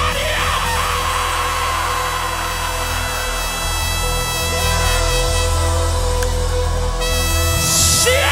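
Live worship band holding a loud, sustained chord over a steady bass, with a congregation's shout of glory fading out in the first couple of seconds.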